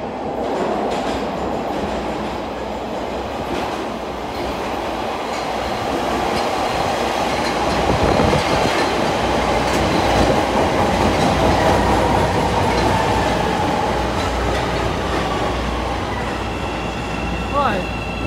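CTA 5000-series rapid-transit train entering an underground station and slowing along the platform: a loud, steady rumble of wheels on rail that swells as the cars pass, with a faint tone slowly falling in pitch as the train slows.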